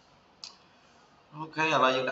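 A single computer mouse click, about half a second in, against near silence.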